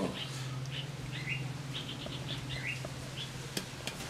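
Small birds chirping in scattered short notes, some sliding upward, over a steady low hum.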